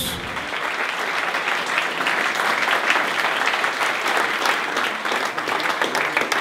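Audience applauding: many people clapping steadily.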